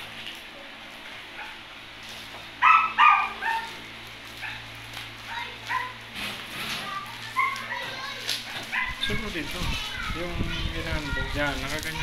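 A dog barking twice in quick succession, short and loud, about three seconds in.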